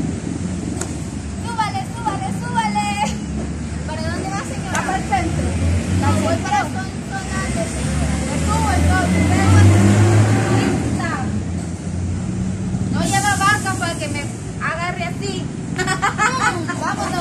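Road traffic: a steady low engine hum, with a motor vehicle passing and loudest about ten seconds in. Women's high-pitched voices come and go over it.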